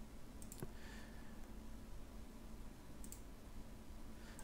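A few faint computer mouse clicks, two close together about half a second in and one about three seconds in, over a low steady room hum.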